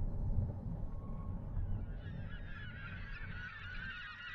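A large flock of birds calling, many overlapping calls fading in about halfway through, over a low rumble that fades in the first half.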